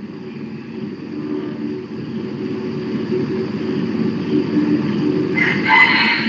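A vehicle's steady low running noise, and near the end a rooster starts crowing.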